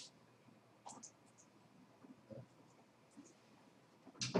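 Near silence: room tone with a few faint, brief scratches and taps.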